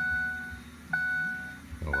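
Truck cab warning chime dinging about once a second, each ding a clear tone that starts sharply and fades, over a faint steady low hum.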